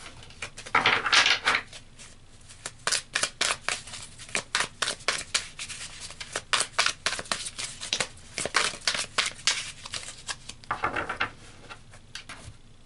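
A deck of tarot or oracle cards shuffled by hand: a brushing slide of cards, then a long run of quick card snaps, several a second, and another brushing slide near the end.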